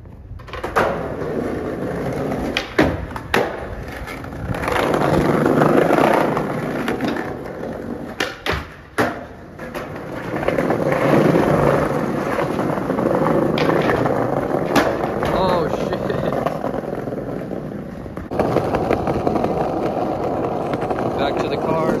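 Skateboard wheels rolling over brick and stone paving: a rough, steady roll that swells and fades, with a few sharp clacks of the board on the ground.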